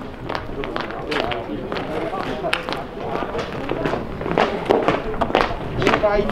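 Indistinct voices of footballers and people by the pitch calling out, mixed with scattered short sharp knocks.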